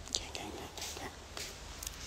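Handling noise from a phone being carried while walking: a few short, irregular rustles and scrapes over a low steady rumble.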